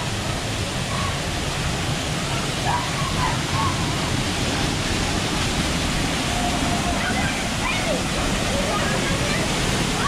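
Waterfall pouring into a rock pool, a steady rush of water, with faint, distant voices over it.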